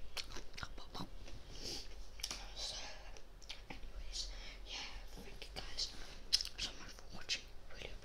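Close-up whispering into the microphone, hissy and breathy, broken by many sharp mouth clicks.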